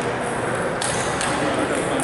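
Table tennis ball in a rally: two sharp clicks a little under half a second apart as the celluloid ball is struck by a rubber-faced paddle and bounces on the table. Voices sound in the background of a large gym.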